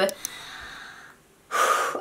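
A woman's breathing between sentences: a soft breathy exhale, then a quick, audible in-breath about a second and a half in.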